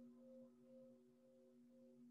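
Near silence, holding only a faint, steady low tone with a couple of weaker overtones: a soft sustained drone from a background music bed.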